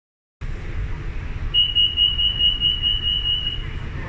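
Door-closing warning tone on a Siemens Modular Metro train: one steady high-pitched beep lasting about two seconds, starting about a second and a half in. It sounds over the low, steady rumble of the train standing at the platform.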